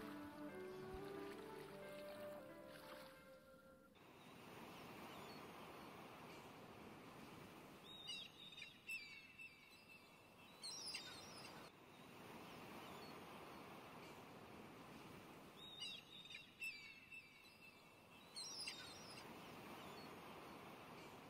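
Soft background music that stops about four seconds in, followed by a faint steady hiss with short clusters of bird chirps that come back in the same pattern about every eight seconds, like a looped nature-ambience track.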